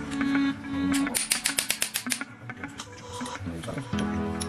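Small hammer rapidly tapping a metal punch against a part of a Stihl FS38 trimmer during disassembly: about ten quick, light metallic taps over about a second, starting about a second in. Background music plays throughout.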